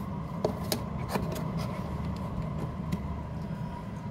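A few short plastic clicks in the first second or so as a clear tube is pushed into a plastic clip stand, over a steady low background hum.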